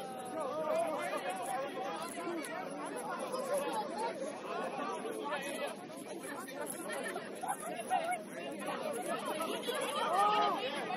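Several people talking at once, with overlapping chatter and no single voice clear.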